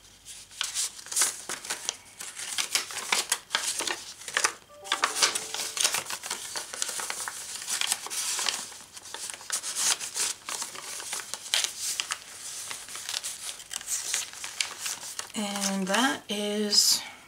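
Paper rustling and crinkling in short, irregular strokes as tags and paper inserts are handled and pulled from a pocket in a handmade junk journal.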